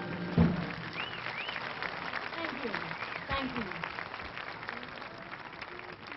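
Audience applauding and cheering after a jazz number ends, with two rising-and-falling whistles about a second in and scattered shouts. A sharp thump sounds just after the start.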